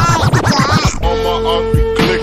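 Chopped and screwed hip hop track, slowed down. The first second is a rapid stuttering, scratch-like run of quick repeats and pitch glides. Then comes a held low note with a deep beat hit near the end.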